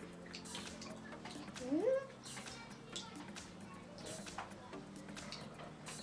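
A child's short rising hum, like a questioning "mm?", about two seconds in, over a faint steady low hum and scattered small clicks.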